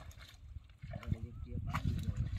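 Indistinct, muffled talking with a short pause near the middle.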